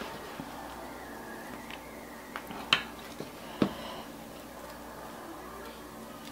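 A few short, sharp clicks and knocks from utensils and food being handled on a kitchen counter. They come in a brief cluster in the middle, two louder ones about a second apart, over a low steady room background.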